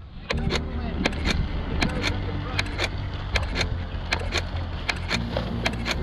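Outdoor wind rumbling on the microphone, with irregular sharp clicks throughout and a faint voice.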